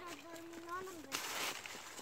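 A person's voice, short and repeated, then a brief rustling hiss about a second in.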